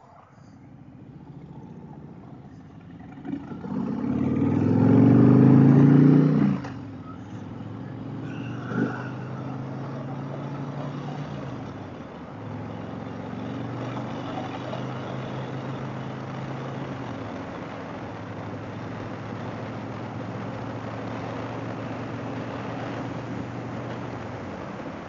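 Harley-Davidson Fat Boy's V-twin engine pulling away from a stop, loudest under hard acceleration about four to six seconds in, then dropping back briefly twice, about six and a half and twelve seconds in, as it shifts up. It settles into a steady cruise with wind rushing over the microphone.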